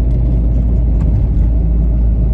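Car cabin noise while driving at road speed: a steady low rumble of tyres on the road and the engine, heard from inside the car.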